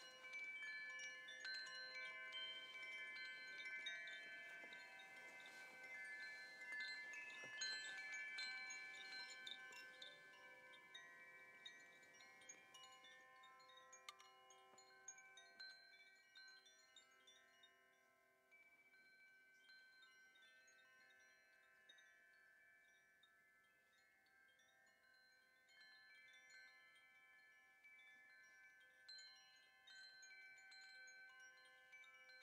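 Hanging metal wind chime ringing softly, many overlapping bell-like tones from repeated light strikes. The tones thin out and fade through the middle, with a few fresh strikes near the end.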